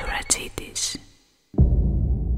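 Glitchy electronic logo-sting sound effect: noisy swishes and clicks that fade out a little after a second in. After a brief silence, a sudden deep boom starts near the end and begins to die away.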